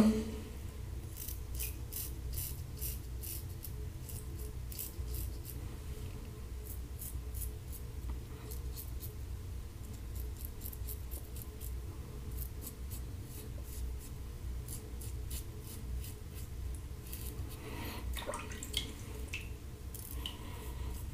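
Standard aluminum safety razor with a Kai double-edge blade scraping through stubble in many short, quick strokes, in bursts with a pause of a few seconds midway, over a low steady hum. The blade is at the end of its life after three shaves.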